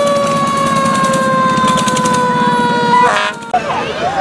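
A siren holding one steady tone that slowly sinks in pitch and cuts off about three seconds in, followed by a brief horn-like blast, over the low running of small engines.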